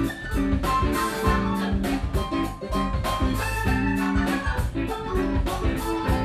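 Live blues band playing: drum kit keeping a steady beat under sustained keyboard chords and electric guitar.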